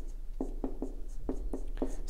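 Marker pen writing on a whiteboard: a quick run of short strokes, about five a second, as the letters and brackets are drawn.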